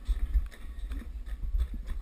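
Skeleton sled setting off down an ice track: a low, uneven rumble of the runners on the ice, with irregular knocks and clatters as it gathers speed.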